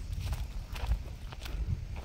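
Footsteps of a person walking on a stony hillside path through tall dry grass: a handful of irregular steps over a low rumble.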